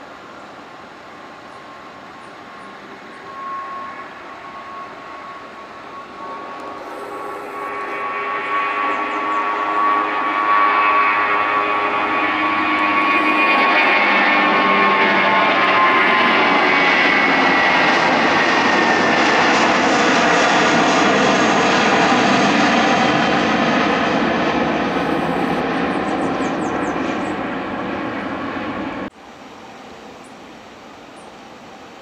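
Airbus A320 jet engines at takeoff power. A steady whine builds as the airliner accelerates and lifts off, grows loud as it passes and climbs, then falls in pitch and fades as it climbs away. The sound cuts off abruptly near the end.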